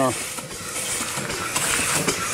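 Upright steam engine running slowly on low steam pressure, with a steady hiss of steam that swells near the end. The hiss comes from a leak around the piston rod, and the steam line is carrying a lot of water.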